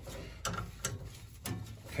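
A few faint, sharp metal clicks, spaced apart, as a flare-nut wrench is fitted to the thermocouple nut on a gas boiler's gas valve.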